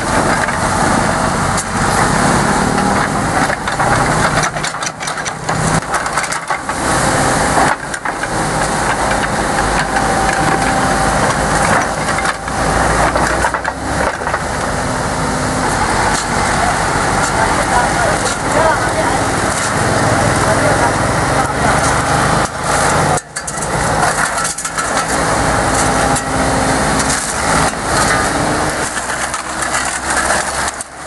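Excavator's diesel engine running steadily, with people talking over it.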